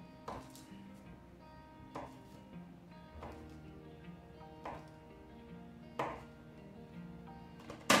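Knife cutting a cold stick of butter into cubes, each cut ending in a sharp tap on the wooden counter about every second and a half, with a louder knock near the end. Soft background music runs underneath.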